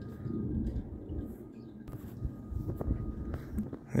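Handling noise and footsteps of someone walking through snow while carrying the camera: an uneven low rumble with a few soft crunches.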